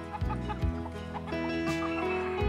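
Chickens clucking over background music that has held, sustained notes and a low bass line with occasional drum hits.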